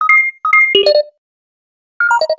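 Electronic beep sound effect like a security-system keypad being armed: two short two-tone beeps half a second apart, then a quick flurry of beeps at different pitches, then silence. A falling run of beeps starts at the very end.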